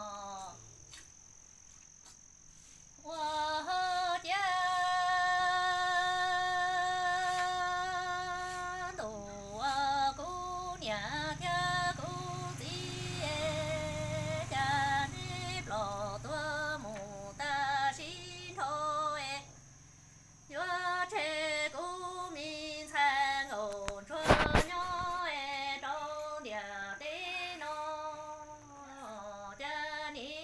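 A woman singing Hmong kwv txhiaj, a sad orphan's lament, solo. After a short pause she holds one long wavering note, then sings ornamented phrases that rise and fall with breaths between them. A single sharp knock comes about 24 seconds in.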